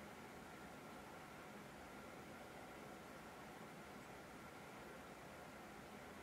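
Near silence: a steady, faint hiss of room tone with a thin high tone under it.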